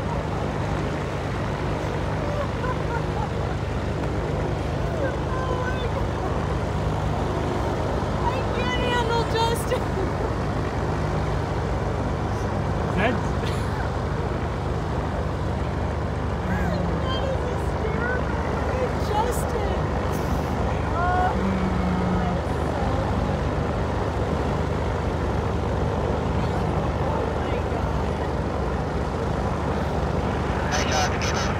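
A steady low engine drone from engines running on the airport apron, with faint distant voices.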